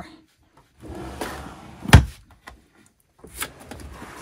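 Drawers of a white storage drawer unit: one drawer slides shut and closes with a loud thump about two seconds in, then a lower drawer is pulled open with a few lighter clicks near the end.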